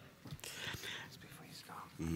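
Faint whispered, murmured speech.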